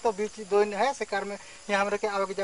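Speech only: a person speaking in a Hindi dialect, with a short pause a little over halfway through.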